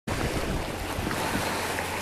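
Wind buffeting the microphone over the wash of the sea: a steady rushing noise with an uneven low rumble.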